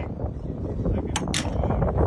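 Wind rumbling on the microphone and close handling noise, with two short hissy bursts a little over a second in.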